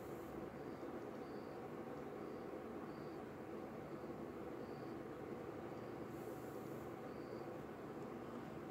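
Quiet room with a steady low hum, and a cricket chirping faintly in short high chirps every half second to a second.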